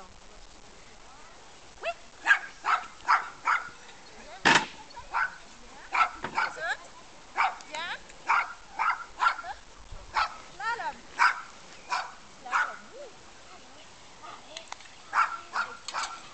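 A dog barking in quick runs of short barks, with brief pauses between the runs and one louder, sharper bark or knock about four and a half seconds in.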